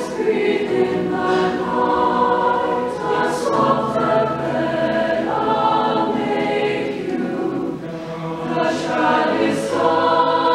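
Large mixed choir singing a lullaby in sustained chords that shift every second or two, easing off briefly about eight seconds in.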